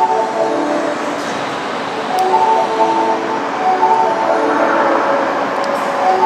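A train-approach melody repeating a short phrase of steady chiming notes over the platform loudspeakers. Under it an Osaka Subway 30 series train approaches through the tunnel, its rumble growing near the end.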